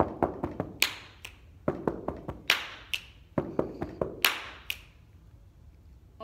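Body percussion played three times in a row: four foot stomps on a carpeted floor, then a finger snap and a hand clap, each cycle taking under two seconds. It stops about five seconds in.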